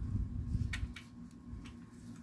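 Faint clicks and light knocks of a hard plastic toy shark being handled, over a low rumble during the first second.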